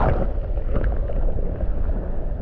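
Sea water heard through a microphone dipped just under the surface: a short splash as it goes in, then a muffled, low rumble and slosh of shallow water over pebbles.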